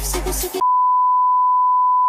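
Dance music cuts off about half a second in and is replaced by a steady, unwavering single-pitch beep: the TV test-card 'no signal' tone.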